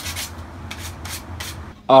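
Short, irregular strokes of sandpaper rubbing on the wooden handle of a homemade training sword, about six in a second and a half. A man's voice begins near the end.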